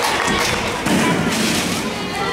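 Children's voices chattering in a large hall as stage props and a folding metal chair are moved about, with a thud about a second in.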